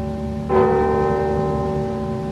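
Large clock-tower bell tolling: one strike about half a second in, its overtones ringing on and dying away slowly over the fading ring of the stroke before.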